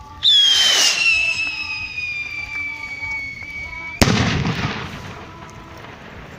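A whistling skyrocket goes up with a sudden whoosh and a long, loud whistle that slides slowly down in pitch, then bursts with a sharp bang about four seconds in.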